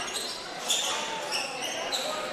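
Basketball game sound on a hardwood court: the ball bouncing and a few short, high sneaker squeaks over a murmur of voices in a large hall.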